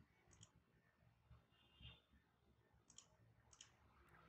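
Near silence, with a few faint computer mouse clicks spread through it.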